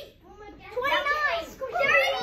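Speech only: after a brief pause at the start, a voice speaks, child-like to the tagger.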